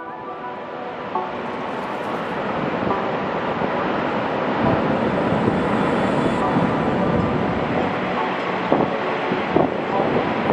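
Niagara Falls rushing as a steady roar of falling water, mixed with wind buffeting the microphone; it swells over the first few seconds and then holds steady, with a few short gusts near the end.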